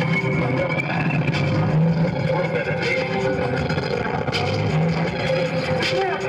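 Live experimental electronic improvisation: a dense, noisy mix of sustained drones, low notes that come and go, and scattered clicks.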